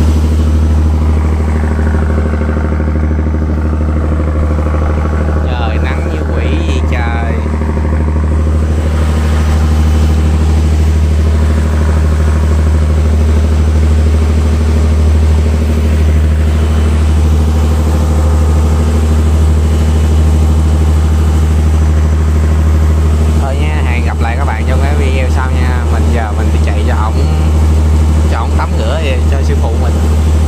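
Fishing boat's engine running steadily under way, a deep, even drone that doesn't change speed.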